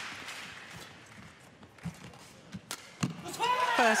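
Arena crowd noise dying away, then a few sharp knocks in the second half: racket strikes on the shuttlecock and footfalls on the court during a badminton rally in a large hall.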